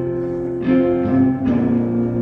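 A live country band playing between sung lines: guitars holding steady chords, which change about half a second in and again about a second and a half in.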